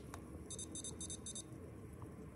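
Handheld infrared thermometer beeping four short high beeps, about three a second, as it takes a temperature reading, over a steady low room hum.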